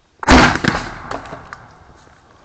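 PVC spud gun firing a potato: one loud bang about a quarter second in, trailing off over about a second and a half with a few fainter cracks.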